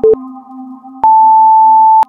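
Electronic interval-timer beeps over a soft synth music bed: a short low beep, then about a second later a long, higher beep lasting about a second. This is the end of the countdown, signalling the switch to the next exercise.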